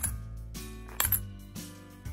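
Coins dropped one at a time into a folded-paper origami coin box, each landing with a sharp metallic clink against the coins already inside: one at the start and a brighter one about a second in.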